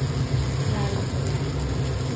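Spiced mashed potato frying in a nonstick pan, stirred and scraped with a slotted steel spatula, over a steady low hum.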